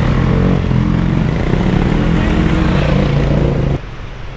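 Competition trials motorcycle engine working a section, its note rising and falling with the throttle. Just before the end it drops off abruptly to a quieter, more distant engine sound.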